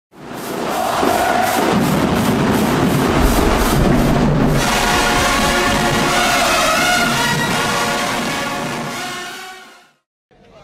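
Intro music for a logo animation. It opens with an even beat of hits, about two or three a second, for the first four seconds or so. Then a dense held chord takes over and fades out near the end.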